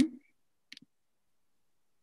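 A faint single computer-mouse click about three-quarters of a second in, following the tail of a murmured 'mm-hmm'.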